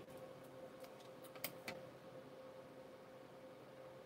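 Near silence with a faint steady hum, broken by a few light clicks in the first two seconds, the loudest about one and a half seconds in, as small paper parts are handled.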